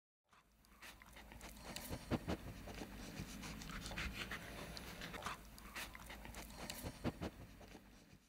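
A dog panting, with irregular sharp breaths, fading in just after the start and fading out at the end.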